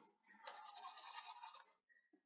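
Faint scratching of a stylus drawn across a drawing tablet, lasting about a second, as a highlight is marked on the screen.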